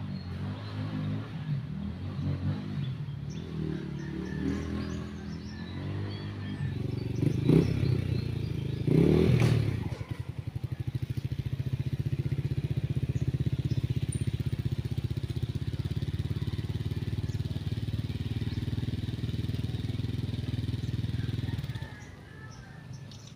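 Motorcycle engine revving unevenly, with two sharp blips of the throttle about seven and nine seconds in. It then settles from about ten seconds on into a steady idle with a fast, even beat.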